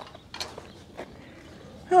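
Metal chain-link gate being opened: its latch and hinge hardware give a few light clicks and a short rattle, about half a second in and again about a second in.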